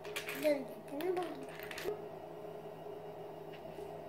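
Small plastic Lego pieces clicking and rattling as a hand rummages through a plastic bowl of them, a few sharp clicks in the first two seconds, with a brief soft vocal sound from a small child.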